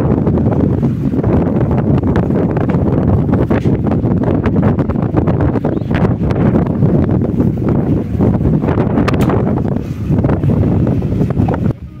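Wind buffeting the microphone: a loud, gusty rumble that dips away just before the end.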